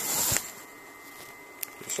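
Handling noise from a handheld camera being moved: a short rustle at the start, then quiet room tone and a single click shortly before the end.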